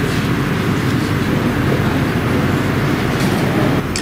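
A steady, loud rumble and hiss of background noise with no speech in it; the level drops slightly just before the end.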